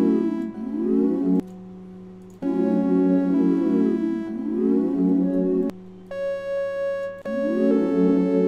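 Synthesizer chord loop from Arturia Analog Lab V playing back, with sweeping tones gliding up and down through the sustained chords. Playback cuts off twice, about a second and a half in and again near six seconds, and between the second stop and the restart a single held synth note sounds on its own.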